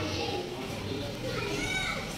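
Children's voices and indistinct speech in the background, with a high, rising-and-falling child's voice about one and a half seconds in.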